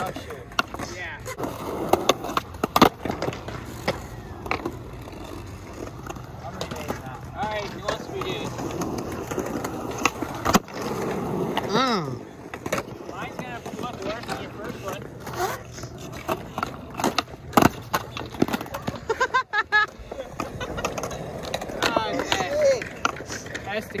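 Skateboard wheels rolling on smooth concrete, broken by sharp cracks of the tail popping and the board landing as flatground tricks are tried, the loudest about 3, 10 and 17 seconds in. Indistinct voices are heard now and then.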